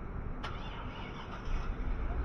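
Street traffic noise with a large SUV's engine running close by, a low rumble that grows a little louder near the end.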